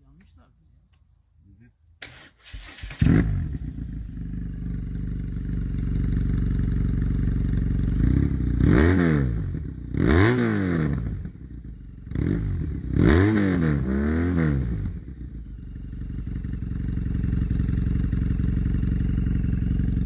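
Motorcycle engine started: it catches after a brief crank about three seconds in, settles to idle, then is revved four times, each blip rising in pitch and falling back, before it idles steadily again.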